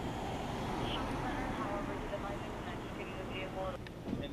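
Faint police radio dispatch voices over a steady low hum.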